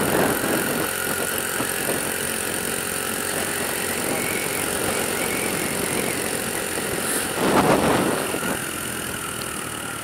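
Honda C90's 90cc single-cylinder four-stroke engine running steadily under the load of two riders, mixed with wind rush on the helmet-mounted microphone. A louder rush of noise swells up about seven and a half seconds in, and the sound eases off slightly near the end.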